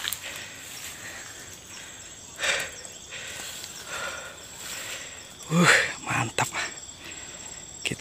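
A steady, thin, high insect drone in the background. There is a short rustle about two and a half seconds in, and a brief burst of a man's voice near the end.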